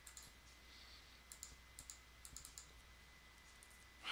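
Faint clicks of a computer keyboard and mouse: a few soft, scattered taps in the middle, over near-silent room tone with a faint steady high whine.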